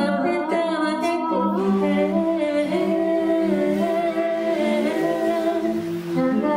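An a cappella vocal group singing in close harmony, several voices holding sustained chords that shift every second or so.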